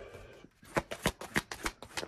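A tarot deck being shuffled by hand: a quick run of card flicks and snaps, about five a second, starting about half a second in.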